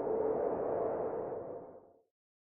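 Logo intro sound effect: a whoosh carrying a steady hum-like tone, which swells and then fades out near the end.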